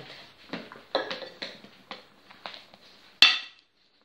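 Metal cake pans and a mixing bowl being handled: a few light knocks, then one sharp, ringing clink a little after three seconds in.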